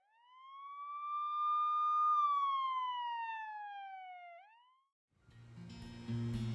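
An edited-in whistle sound effect: one clear whistling tone that rises for about two seconds, slides slowly down, and ends with a quick upward flick before cutting off.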